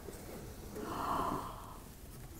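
A person's soft, breathy gasp, swelling and fading about a second in: an emotional reaction as the restored guitar is revealed.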